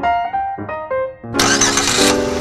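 Piano music; about a second and a half in, a car engine cranks and starts over it, a sudden loud rush that keeps going.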